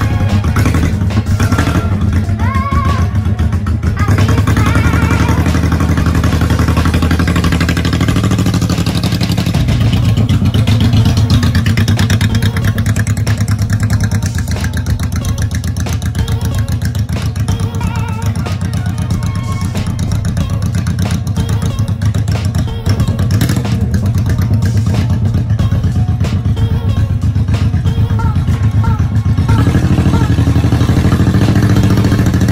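1997 Honda Shadow VT1100 V-twin engine running steadily as the bobber is ridden off and brought back around.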